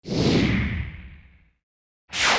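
A single loud whoosh sound effect for an animated on-screen graphic. It starts suddenly, falls in pitch and fades out over about a second and a half.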